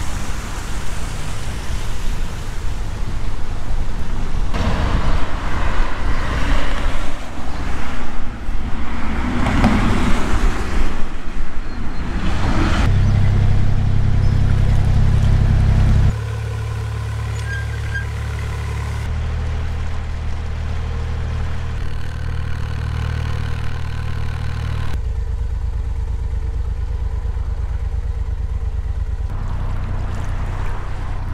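Rough, gusting noise for the first dozen seconds, then a narrowboat's engine running at steady revs, a low hum that jumps in level at several abrupt cuts.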